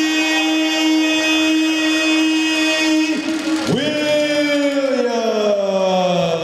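Public-address announcer drawing out a player's name in long sung-out calls: one note held flat for about three seconds, a short break, then a second call that jumps up and slides slowly down in pitch.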